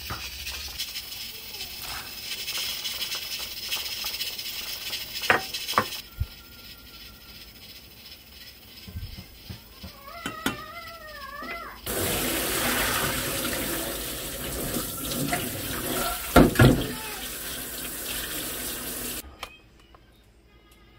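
Kitchen tap running hard for several seconds, with a few sharp clanks of metal cookware, as beef that has just been parboiled is rinsed. Before that comes a quieter stretch with a pot of water boiling and a wooden spoon stirring.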